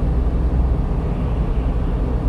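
Steady low road and engine rumble heard from inside the cab of a vehicle cruising on a highway.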